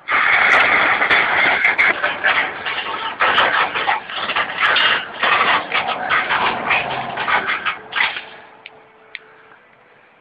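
Ratchet strap being tightened by hand: rapid rasping clicks for about eight seconds, then it stops.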